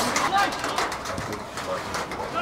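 Open-air football pitch sound: short distant shouts and calls of players over a steady outdoor hiss, with a few sharp knocks.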